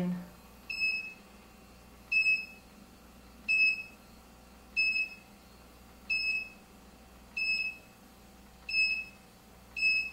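IntelliQuilter computer guidance system giving eight short high beeps, about one every second and a half, each one as a point on the seam line is marked with the remote.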